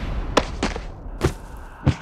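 Sound-effect hits of an animated title-card sting: four separate heavy thuds spread over two seconds, the last one the loudest, over a quieter background.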